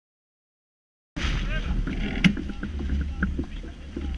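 Silence for about a second, then the sound cuts in suddenly: wind buffeting the microphone aboard a sailing yacht, a steady low rumble, with crew voices and one sharp click about halfway through.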